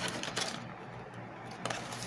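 Faint handling of paper in a cardboard box: a hand shifting a paper leaflet and newspaper wrapping, with soft rustling and two light taps.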